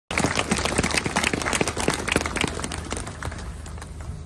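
Small crowd clapping, scattered and irregular, thinning out and fading away near the end.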